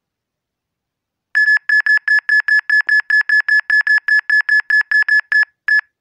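Radiation-meter phone app sounding its high-reading alarm: a loud run of short, identical electronic beeps, about five a second, starting about a second in and stopping near the end with one last beep after a short gap, as the smartwatch held next to the phone drives the reading high.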